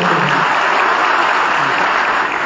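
Audience applauding, steady clapping that rises as a woman's voice over a microphone stops about half a second in.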